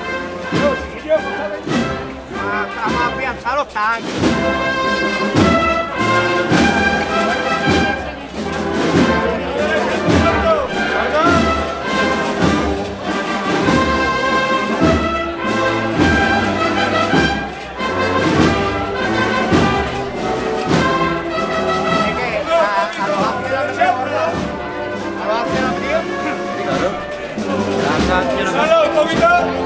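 Spanish wind band (banda de música) playing a processional march: brass melody over a steady drum beat.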